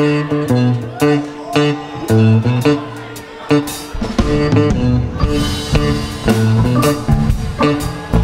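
Live rock band playing a song's instrumental intro: electric guitar, bass and drums. The playing is sparser at first, and the full band comes in harder about halfway through, with bent guitar notes.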